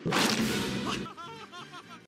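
Cartoon sound effects: a loud rushing whoosh for about a second, then a run of short chirping tones that rise and fall quickly.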